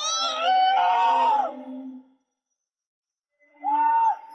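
A woman in labour crying out in pain: a long wavering wail of about two seconds, then a short silence and another cry starting near the end.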